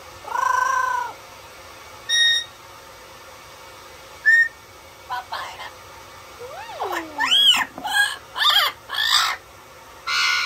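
Yellow-headed Amazon parrot calling: one long arching call near the start, two short calls, then a run of four or five quick squawks that slide up and down in pitch in the second half.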